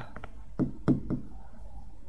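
Chalk tapping on a blackboard while a word is written: several short, sharp taps in the first second or so.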